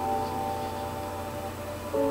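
Soft background music of long held notes, shifting to a new chord near the end.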